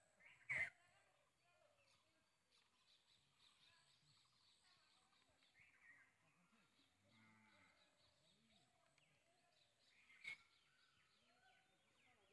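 Faint bird chirps over a near-silent rural background, with two brief sharp clicks, a louder one about half a second in and another near ten seconds in.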